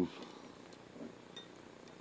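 Faint handling noise with a few small clicks, from fingers working the heater cartridge and its wires out of a 3D printer's hot end.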